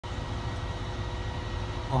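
Steady mechanical hum with a few faint steady tones above it, the drone of harbour machinery such as a moored ship's engines; a voice starts speaking at the very end.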